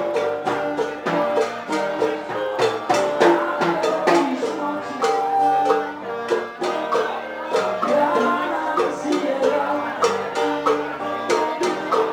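Live band playing an instrumental passage of a Latin ballad: strummed and plucked acoustic guitar with keyboard, light percussion and a clarinet carrying sustained melody notes.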